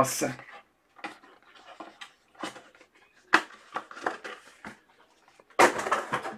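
Scattered light clicks and knocks of trading cards and packs being handled on a desk, with a brief burst of rustling near the end.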